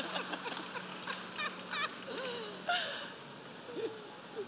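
Several people laughing at a joke, with scattered chuckles and short laughs that die down toward the end.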